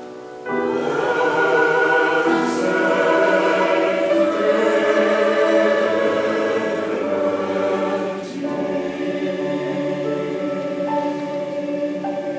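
Mixed church choir singing in sustained chords, coming in loudly about half a second in after a brief pause; the singing softens a little around eight seconds in.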